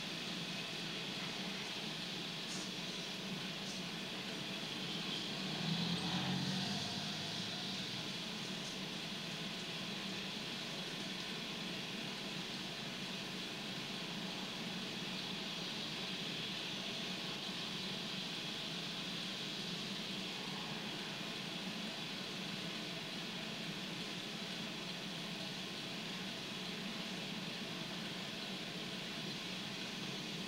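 Steady road and engine noise from inside a moving car, heard as the soundtrack of a videotape being played back, with a brief louder swell about six seconds in.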